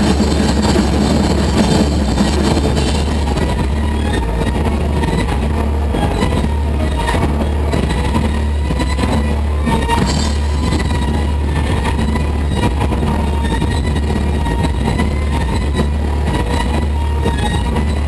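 Live band's sustained droning wall of amplified guitar and keyboard noise, with a heavy steady low hum and faint wavering high tones and no clear drumbeat.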